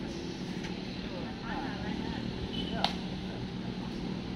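Outdoor background of a low steady hum with faint voices in the distance, and one sharp click or snap about three seconds in.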